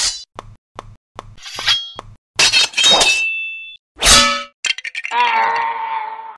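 Dubbed fight sound effects: short soft thumps about every half second, metallic sword clangs that ring on, and a loud hit about four seconds in. Near the end comes a longer pitched, wavering sound.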